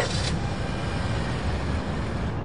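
Steady street-traffic background: a low rumble with a hiss over it, even throughout.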